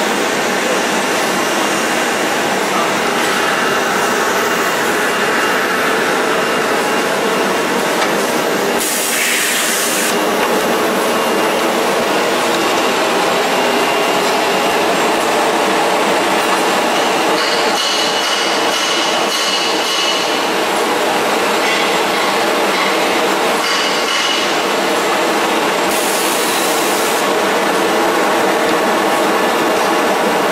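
CDH-210F-2 handkerchief tissue paper machine line running: a steady, loud mechanical clatter, broken twice by a short hiss.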